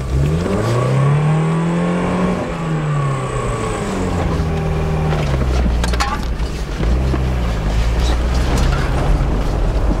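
Mazda Miata's inline-four engine, heard from inside the cabin, revved twice, its pitch rising and then falling each time before it settles to a low steady running note. The revs are held up because the engine keeps stalling. A short click comes about six seconds in.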